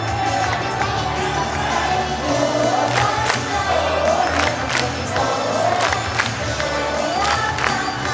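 Live idol-pop performance: girls' voices singing into handheld microphones over a backing track with a steady beat and bass. A crowd of fans shouts and cheers along with the song.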